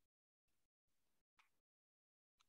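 Near silence: gated room tone with one very faint click about one and a half seconds in.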